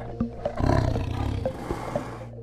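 A loud, rough, roar-like sound swells in about half a second in and carries on for about a second and a half, over soft plucked electronic music with a low drone.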